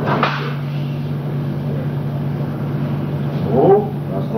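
Steady low electrical hum on the soundtrack, with a short burst of noise just after the start and a brief voice near the end.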